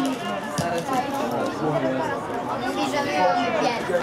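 Several spectators chatting close to the microphone, voices overlapping in casual conversation.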